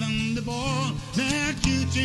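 Takamine acoustic guitar accompanying a man singing a slow folk ballad, his held notes wavering with vibrato.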